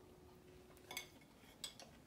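Two faint clinks of a fork against a plate, about a second in and again near the end, over near silence.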